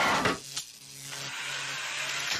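Cartoon sound effect of a suicide booth's rack of killing tools (saw blades, drill, knife, electric prod) mechanically extending. A rushing slide dies away in the first half second, then a click, then a steady low mechanical hum with a hiss.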